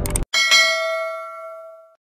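Notification-bell 'ding' sound effect of a subscribe-button animation, following a few quick clicks: a bright bell chime struck about a third of a second in and again just after, ringing on and fading away over about a second and a half.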